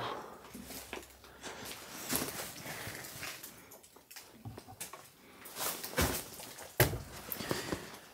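Scattered knocks and clicks from handling an old refrigerator: its door being swung open and things on its shelves being touched, the loudest knocks about six and seven seconds in.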